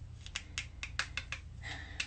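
A quick run of about ten light clicks and taps from makeup tools being handled, as another brush is picked up, over the first second and a half.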